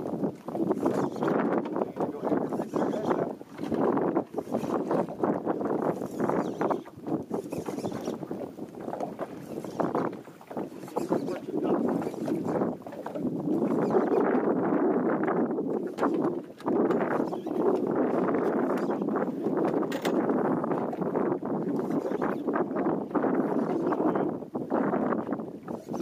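Noise of wind and choppy water around a small open fishing boat, rising and falling unevenly, and more continuous from about halfway through.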